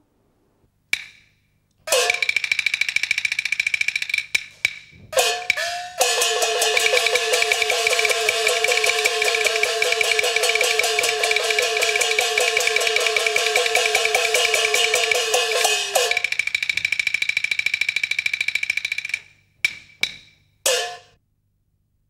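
Peking opera percussion accompanying a stage fight: drum, clappers and gongs striking in sharp phrases, building into a long fast roll of strokes with ringing gong tones through the middle, then breaking off into a few single strikes near the end.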